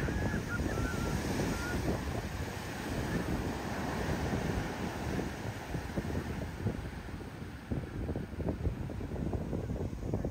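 Heavy shorebreak surf crashing and washing up the sand, a steady roar of breaking water, with wind buffeting the microphone.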